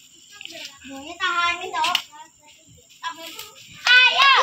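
Children's voices in the background, quieter than the commentary around them, with one short call standing out about a second in.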